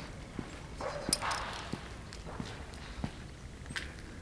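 Footsteps on brick paving, a steady walking pace of roughly one step every two-thirds of a second. A louder scuff or rustle comes about a second in.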